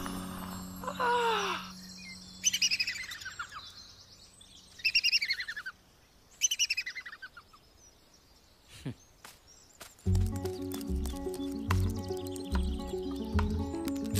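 Bird chirping in three short bursts of quick notes that fall in pitch, with a quiet stretch between them. Music with a steady beat comes in about ten seconds in.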